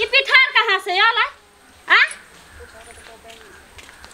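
A woman's high-pitched voice: a rapid run of speech-like vocalising for just over a second, then one short rising cry about two seconds in.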